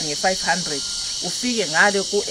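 A steady, high-pitched chorus of insects chirring without a break.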